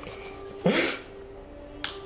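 Two sharp snapping sounds: a strong one about two-thirds of a second in and a shorter, thinner click near the end.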